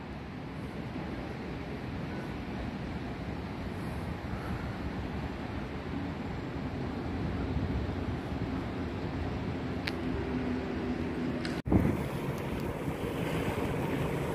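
Steady wind rushing over the microphone of a moving bicycle, with road noise underneath. Near the end the sound drops out briefly and a short knock is heard.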